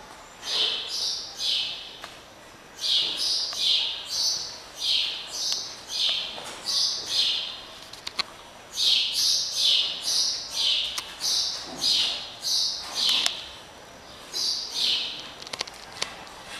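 A bird calling: short, high chirps in groups of two to four, each chirp stepping down in pitch, with pauses of about a second between groups.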